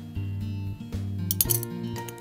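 Background music with a steady beat. About one and a half seconds in, a few quick light clinks of a metal spoon against the small metal tin of powder.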